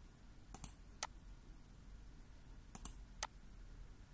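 Computer mouse clicking: four sharp clicks in two pairs, one pair about half a second in and the other near three seconds.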